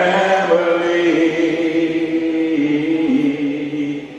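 A man's voice singing unaccompanied into a microphone in one long, drawn-out phrase, the held note stepping down in pitch twice in its second half.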